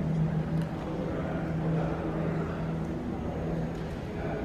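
Ambient noise of a large indoor convention hall: a steady low hum over a constant wash of background noise.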